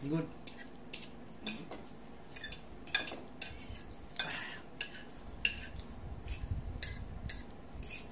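Fork clinking and scraping against a plate in short, irregular clicks as noodles are stirred and lifted.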